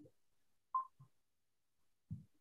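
Mostly quiet, with one short high beep a little under a second in and a fainter blip just after it.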